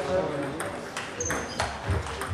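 Table tennis rally: the ball clicks sharply off the bats and the table several times in quick alternation, with a brief high squeak near the middle.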